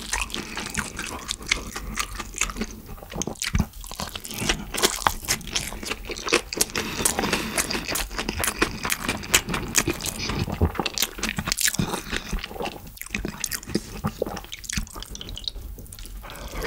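Close-miked chewing of a mouthful of yeolmu bibimbap (rice with young radish kimchi, bean sprouts and cabbage): a steady run of wet mouth clicks and small crunches.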